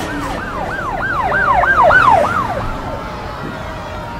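Emergency-vehicle siren sounding in quick rising-and-falling sweeps, about three a second, loudest around the middle and fading toward the end.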